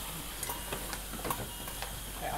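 Metal surgical instruments clicking and clinking as they are handled at the chest, about four sharp clicks spread irregularly over two seconds, over a low steady hum of room equipment.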